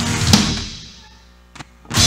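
Live grupera band ending a song on one loud accented hit from the full band and drum kit with cymbal, about a third of a second in, which rings out and fades. Two sharp drum strikes follow near the end.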